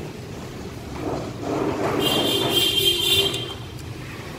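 A motor vehicle passing by, growing louder about a second in and fading near the end, over a steady background of traffic.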